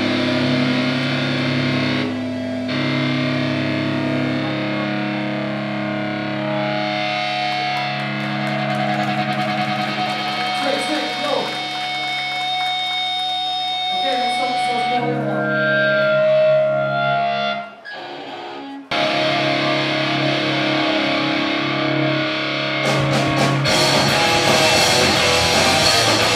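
Live electric guitars playing long, sustained chords through distortion and effects, with no steady drum beat. The sound dips briefly about eighteen seconds in, then cuts back in suddenly.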